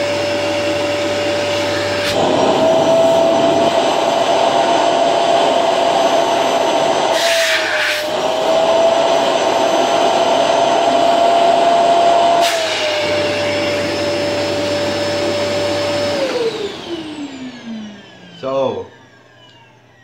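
2100-watt Electrolux UltraFlex canister vacuum cleaner motor running with a steady whine. Its pitch rises slightly and it gets louder from about two seconds in to about twelve seconds in, while the hose is sealed against a suction gauge, with a brief hiss of air about eight seconds in. Near the end the motor is switched off and winds down with a falling whine.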